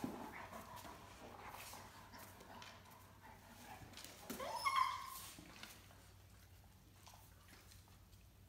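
A Great Dane puppy gives one short, high yelp about halfway through, during rough tug-of-war play with an adult Great Dane. Faint whining and soft scuffling of paws on a tile floor come before it.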